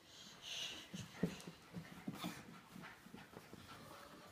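Dog panting quickly in short, even breaths, with a sharp knock a little over a second in.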